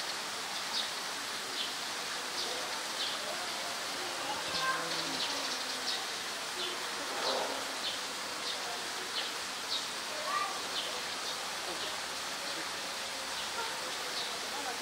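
Outdoor ambience: a steady hiss with short high chirps repeating about one and a half times a second, and faint distant voices now and then.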